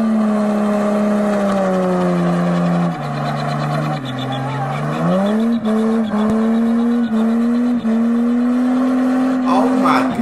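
Car engine held at high revs through a burnout, with the tyre spinning. Its pitch steps down about three seconds in, climbs back a couple of seconds later and then holds, with brief dips in revs.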